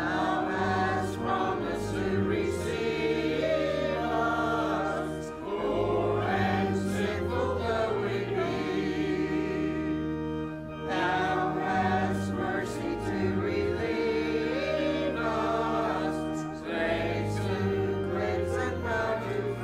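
Church choir singing a hymn with organ accompaniment, in phrases of five to six seconds over sustained low organ notes.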